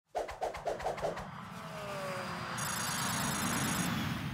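Channel logo intro sound effect: about five quick pulses in the first second, then a rush of noise that swells up as the logo appears, with a falling tone partway through.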